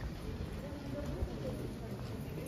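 Pedestrian street ambience: indistinct voices of passers-by and footsteps on brick paving over a low steady city hum.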